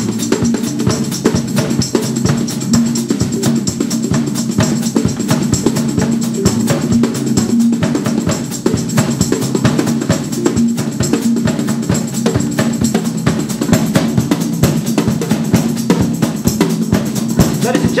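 Live band playing an instrumental passage: fast, steady cymbal and tambourine hits over a sustained low chord from the stringed instruments.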